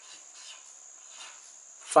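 Marker pen writing on paper, a few faint short strokes. A steady high-pitched tone, like an insect's chirring, runs underneath.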